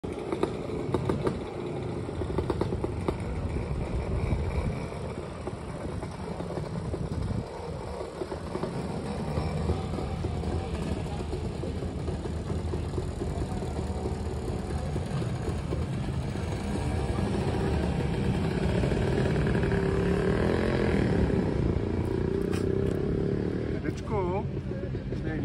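Small farm tractor engine running steadily, with people's voices in the background.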